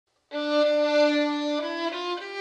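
Background music: a solo violin playing slow, held notes, starting just after the opening moment and moving to a new note about a second and a half in.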